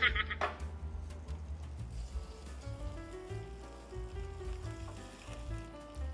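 Quiet background music with a simple stepping melody. Underneath, a faint sizzle as pork ribs go onto a hot grill pan.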